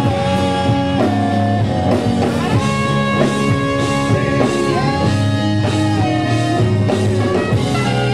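Live rock band playing amplified: electric guitars and keyboard with a man singing long held notes into the microphone.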